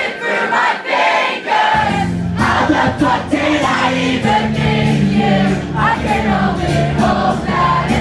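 Live pop-punk song played on acoustic guitar with a band, the audience singing along loudly with the singer. The low instruments drop out for about the first second and a half, then the full band comes back in.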